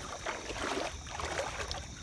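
Faint irregular water lapping against the side of a small jon boat, with crickets chirping steadily in the background.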